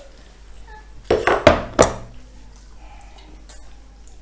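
Tableware clinking: a bowl being set down among plates and glasses on the dining table, a quick cluster of three sharp knocks about a second in, the middle one loudest.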